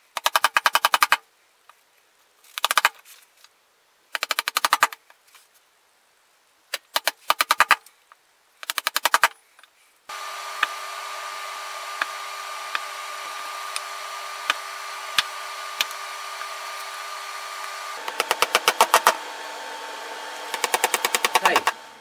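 Chisel struck with a rubber mallet, cleaning out bowtie recesses in a wooden slab: short bursts of fast, evenly spaced blows with pauses between. About halfway through a steady machine whir with a hum starts and runs on under two more bursts of blows near the end.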